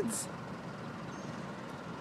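Freight train of tank cars rolling past, a steady even noise with no distinct knocks or tones.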